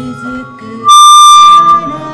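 Bagpipe playing the melody of a sing-along, with one very loud held high note for just under a second starting about a second in, over acoustic guitar and voices singing.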